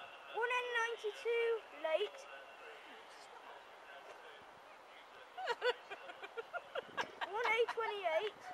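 A child's high-pitched voice, short vocal sounds without clear words: a cluster about half a second in and a longer run of quick rising and falling sounds from about five and a half seconds on, with a quieter stretch between.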